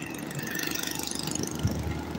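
Engine and road noise of a moving vehicle, heard from on board: a steady low rumble with a hiss of traffic and wind.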